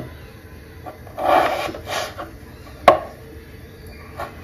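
Kitchen knife cutting a raw, skin-on potato into wedges on a bamboo cutting board: rasping cuts between one and two seconds in, then one sharp knock of the blade on the board near three seconds in.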